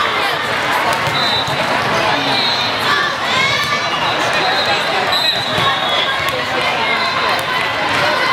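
The din of a large sports hall full of volleyball courts: a steady babble of many players' and spectators' voices, with scattered thuds of balls being struck and bounced and brief high squeaks.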